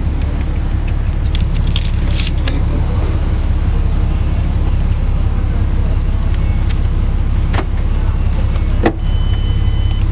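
Car engine idling, heard from inside the cabin as a steady low rumble, with two sharp clicks near the end.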